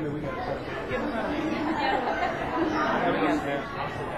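Many people talking at once: overlapping, indistinct chatter.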